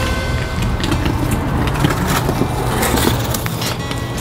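Street traffic noise from passing cars, with background music underneath.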